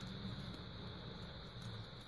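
Faint steady background noise with a low hum: room tone, with no distinct handling sounds.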